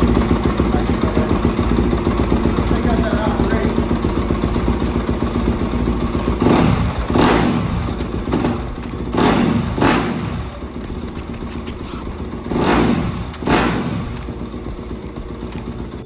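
Yamaha YZ250FX's 250 cc four-stroke single-cylinder engine idling just after starting, then revved in three pairs of quick throttle blips from about six seconds in. The blips check that the throttle returns freely after a new grip and throttle cam have been fitted.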